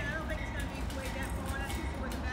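Faint voices over a low steady rumble.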